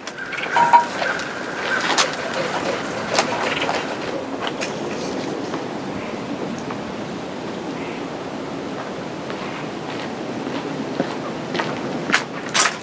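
Spools of wire turning on a steel conduit rod as cable is pulled off them, a rattling rumble with scattered clicks over the first few seconds. Under it runs a steady rushing noise.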